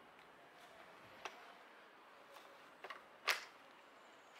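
A few short, sharp clicks and knocks from the EGO hedge trimmer attachment and power head being handled and fitted together, the loudest about three seconds in; the trimmer itself is not running.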